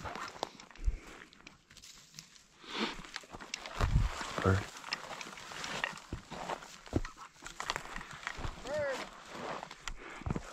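Footsteps and rustling through dry sagebrush and grass, with scattered small snaps of twigs; a single short word is spoken about four seconds in.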